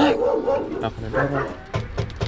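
Dog barking behind a closed window, twice.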